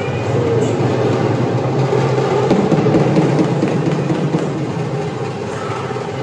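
Loud, rapid festival drumming in a dense crowd's din.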